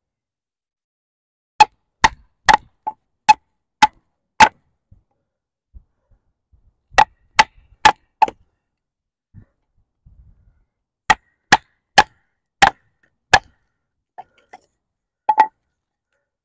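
A wooden baton striking the spine of a Takumitak Charge fixed-blade knife, driving its thick D2 steel tanto blade lengthwise through a small log to split it. The sharp knocks come about two a second in three runs, with pauses between them and a last pair near the end.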